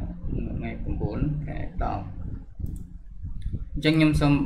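A man talking quietly, with a few computer mouse clicks as a dropdown choice is made, then louder speech starting just before the end.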